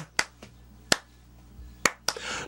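Finger snaps keeping a slow, steady beat: three sharp snaps a little under a second apart.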